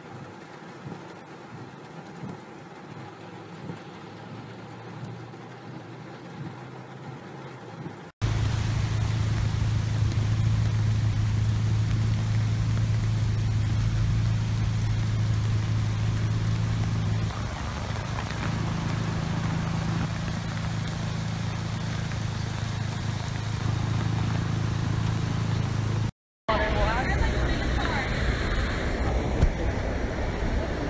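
Rain and road noise heard faintly from inside a car. After a sudden cut comes a loud, steady low hum that lasts most of the time, and near the end a person talks.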